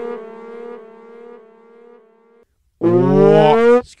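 A long, steady, low horn-like tone that fades away over the first two and a half seconds, then a loud, drawn-out spoken 'Excuse' near the end.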